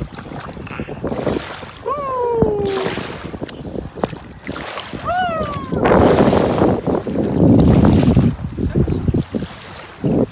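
Shallow sea water splashing around a toddler's feet as he wades, with wind on the microphone; the splashing is loudest from about six to eight and a half seconds in. A high voice calls out twice, about two and five seconds in, each call gliding down in pitch.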